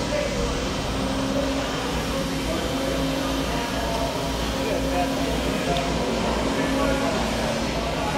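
FlexArm hydraulic tapping arm running, its tap cutting threads into a plasma-cut hole in steel plate that is slightly hardened from the plasma cut; a steady mechanical hum with a faint steady tone.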